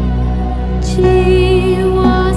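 Javanese kidung music: sustained, slightly wavering melody notes over a steady low drone, with a new held note entering about a second in.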